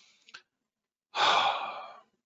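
A man sighs: one loud breath out starting about a second in and fading away over most of a second. A faint short click comes just before it.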